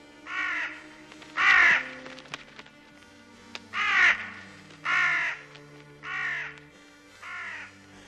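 Crows cawing: six harsh calls, each about half a second long, coming one to two seconds apart, over a film score of low held notes.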